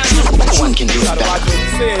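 Hip hop track with a heavy bass beat under a rapping voice; the beat drops out near the end, leaving the voice.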